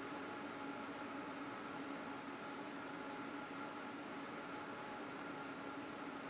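Faint, steady room tone: an even hiss with a few faint, steady hums underneath, unchanging throughout.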